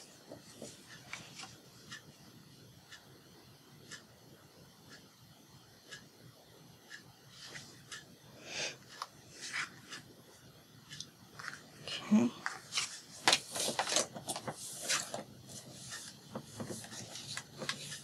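Paper and card being handled: a manila folder-tab card slid and rubbed against a journal page in short, scattered rustles, busier and louder near the end.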